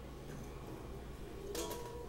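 A quiet pause of faint, steady background hum with no distinct event, then a softly spoken word near the end.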